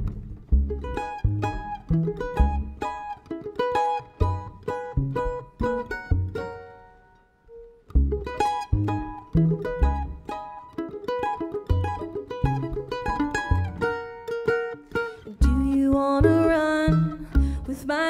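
Instrumental break on mandolin and upright bass: quick plucked mandolin notes over bass notes. About seven seconds in, the playing dies away almost to nothing, then starts again a second later. Sustained notes join near the end.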